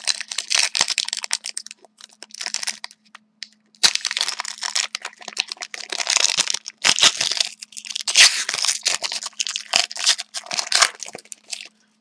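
Shiny plastic trading-card pack wrapper crinkling and tearing as it is opened by hand, in irregular bursts with a short pause about three seconds in.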